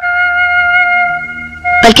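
Background film score: a single held note on a wind instrument, fading away over about a second and a half.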